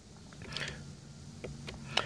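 Faint clicks of a Toyota's steering-wheel audio control buttons being pressed one after another, several in two seconds, over a low steady hum in the car cabin.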